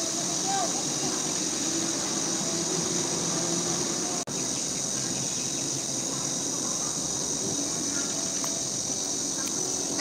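Steady high-pitched drone of insects in the trees, over a low background murmur of distant voices and traffic, with a brief dropout just after four seconds in.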